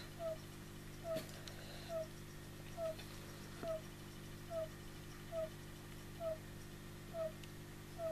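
A short, chirp-like call repeating evenly a little more than once a second, about ten times, over a low steady hum.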